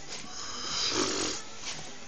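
A sleeping man snoring once, a single drawn-out snore of about a second, loudest in the middle.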